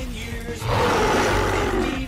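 A cartoon monster's roar sound effect: a loud, rough roar that starts about half a second in and sinks slightly in pitch as it goes on, over background music.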